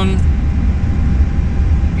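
A steady low background rumble, even in level throughout, of machinery or ventilation.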